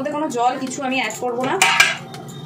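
A stainless steel plate set down on a stone countertop: a brief metallic clatter with a short ring near the end.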